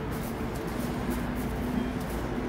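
City street ambience on a wet night street: a steady hum of distant traffic, faint music, and regular steps on wet pavement about twice a second.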